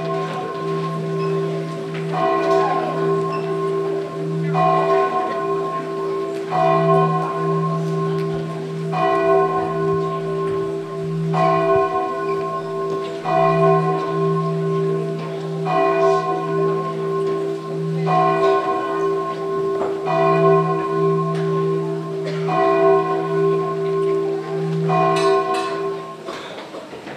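Church bells ringing, a new strike about every two seconds over a steady, lingering hum.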